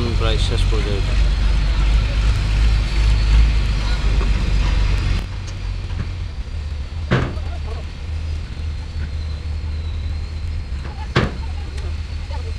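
A low, steady rumble that drops abruptly about five seconds in, with faint distant voices and two sharp knocks, one about seven seconds in and one about eleven seconds in.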